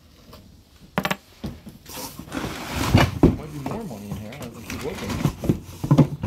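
People talking in a small room, with a quick cluster of clicks and rattles about a second in from objects being handled.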